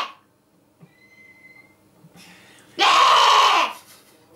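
A man's loud, breathy shout or laughing exclamation, just under a second long, about three seconds in. A faint thin whistle sounds briefly before it.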